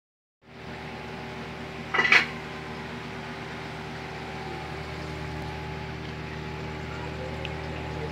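Steady electric hum of an aquarium pump or filter running, with several fixed tones. About two seconds in there is one brief, loud, sharp sound.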